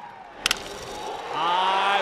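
Crack of a wooden baseball bat hitting a pitch: a single sharp crack about half a second in, over low crowd noise from the ballpark.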